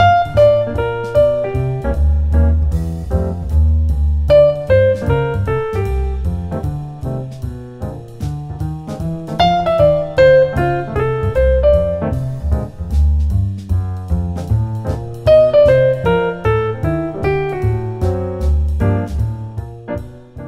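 Jazz piano playing a rhythmic-displacement phrase: a motif starting on beat one, a rest, then the same rhythm restated with new notes starting on beat four. Falling melodic lines sound over low bass notes, with a steady ticking beat underneath.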